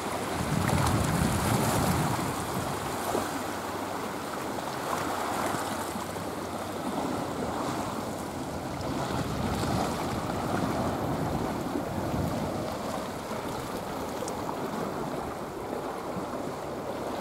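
Sea waves washing against a flat rocky shore, with wind buffeting the microphone, loudest in the first couple of seconds.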